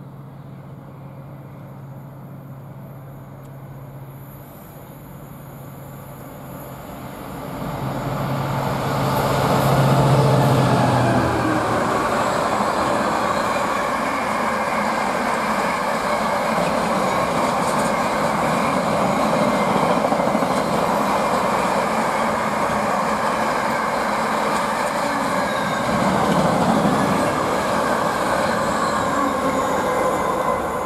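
Class 66 diesel locomotive's two-stroke V12 running with a steady low drone as it approaches, loudest as it passes about ten seconds in. It is followed by a long rake of container wagons rolling through with a steady rush of wheels on rail.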